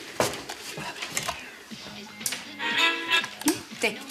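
A few sharp clicks as a small handheld electronic device is handled and its buttons pressed, then a short electronic melody of steady tones from the device, showing it now works.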